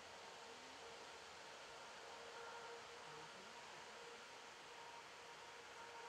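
Near silence: a faint, steady hiss of outdoor background.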